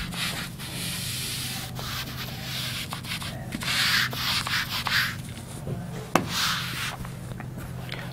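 Whiteboard eraser wiping marker off a whiteboard in a series of rubbing strokes, each lasting about a second.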